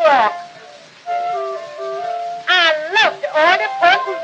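Early acoustic wax-cylinder recording of a woman singing a comic vaudeville song over a small orchestra, her voice swooping and sliding in pitch against steady held notes. The sound dips briefly about half a second in before the music picks up again.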